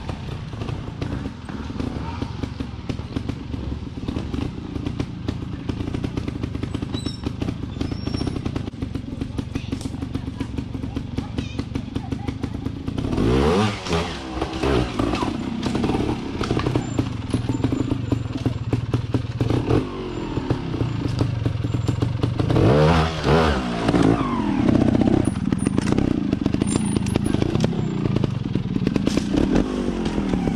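Beta trials motorcycle engine idling and pulsing steadily, revved sharply twice with the pitch sweeping up and back down, about 13 seconds in and again about 23 seconds in, as the bike is worked up rock steps.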